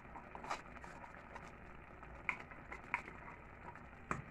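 A few faint, short clicks and scrapes from a spoon working soft cream cheese out of a plastic cup over a metal pot, against quiet kitchen room tone.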